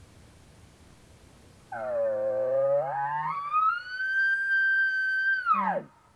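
Elk bugle call blown by hand in imitation of a bull elk's bugle. About two seconds in it starts as a low growl, climbs to a high whistle held for about two seconds, then drops sharply and ends in a short low grunt.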